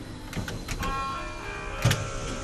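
Trolleybus cab controls: a few clicks of dashboard switches, then a steady electric whine of several held tones from about a second in, with a sharper click near the end.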